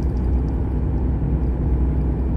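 Heavy truck's engine and road noise heard inside the cab while driving, a steady low drone.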